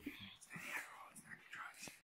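Faint whispering.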